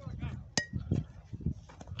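A single sharp metallic clink with a brief ringing tone about half a second in, over a low rumble and faint voices.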